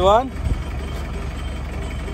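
Steady low engine rumble of an open-sided passenger vehicle, heard from on board, with a brief low thud about half a second in.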